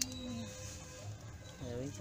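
A faint voice, with a quieter pause in the middle.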